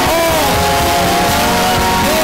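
Many congregation voices praying and crying out at once, at a steady, loud level, over live church worship music.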